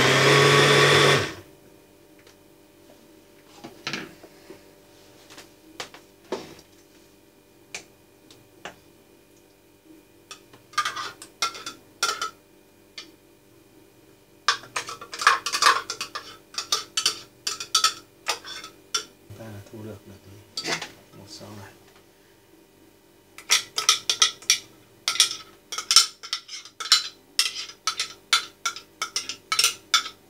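Electric blender running, cutting off about a second in. Then a metal spoon scraping and clinking against a glass blender jar in bursts as the ground pâté paste is scooped out.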